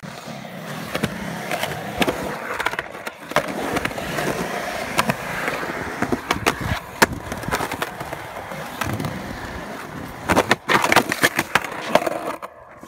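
Skateboard wheels rolling over rough, cracked concrete, clicking over the seams. Near the end comes a loud clatter of several board impacts.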